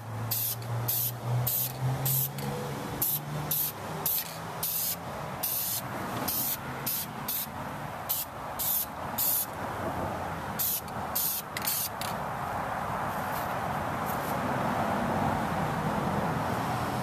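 Aerosol spray-paint can sprayed in a quick series of short hissing bursts, two or three a second, stopping about twelve seconds in. Light misting coats of paint are being built up.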